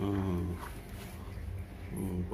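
A cat yowling low, the call of a cat in heat courting. It is loudest for the first half second, then trails off fainter.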